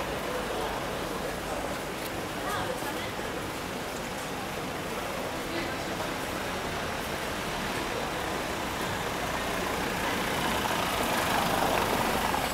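Street traffic noise with a car approaching over cobblestones, growing louder over the last few seconds as it draws near.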